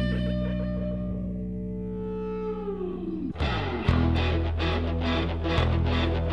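Rock song soundtrack: a held electric guitar chord rings out and fades, its pitch sliding down a little after three seconds. Then the band comes back in with distorted guitar over a steady beat of about three hits a second.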